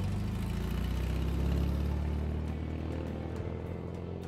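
Classic Volkswagen Beetle's air-cooled flat-four engine running with a low rumble that swells about a second and a half in and then eases slightly, under a film score.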